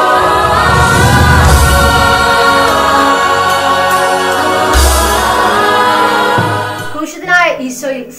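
Choral music with held, stacked chords, marked by two deep low hits with a swish, about a second in and again near five seconds; the music thins out near the end.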